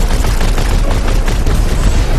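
An AA-12 automatic shotgun fires a long, loud, continuous burst, with explosions mixed in as the rounds hit.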